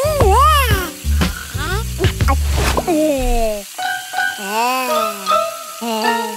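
Water running from a kitchen tap into a steel sink, under high-pitched wordless cartoon-voice sounds that glide up and down, and background music with a deep bass beat that drops out about three and a half seconds in.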